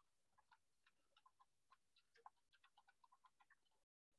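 Near silence with faint, irregularly spaced small clicks, then the sound cuts out to dead silence just before the end.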